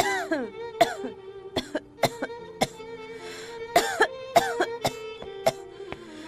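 A sick, feverish girl coughing repeatedly in short, hoarse fits, about ten coughs, over a soft sustained string music score.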